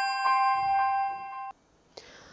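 Bell-like intro jingle: several chiming tones ring on together, re-struck about twice a second and fading, then cut off suddenly about one and a half seconds in.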